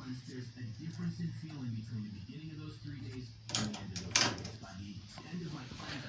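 Faint background voices with no clear words, and two sharp clicks a little past the middle.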